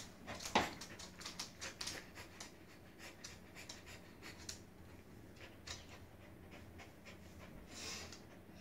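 A corgi and a Doberman play-fighting: panting and breathing, with scattered short clicks and scuffles as they mouth at each other and move about.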